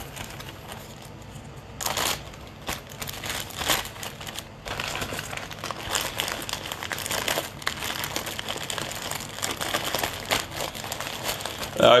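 Clear plastic bag crinkling and crackling as it is handled, starting about two seconds in and going on in irregular bursts.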